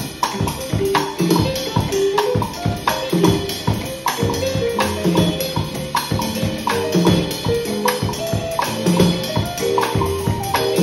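Drum kit played in a Latin rumba groove: ride cymbal, snare and bass drum, with a foot-pedal jam block knocking out a line under the left foot.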